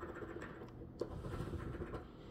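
Metal coin scraping the latex coating off a paper scratch-off lottery ticket: faint scratching with a couple of light taps about a second apart.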